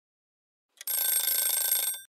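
Silence, then a little under a second in a bright ringing sound begins: steady high tones over a hiss, held at an even level for about a second before cutting off suddenly.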